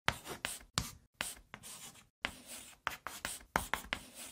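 Chalk writing on a blackboard: about a dozen short scratching strokes, each starting sharply and trailing off, with brief gaps between them.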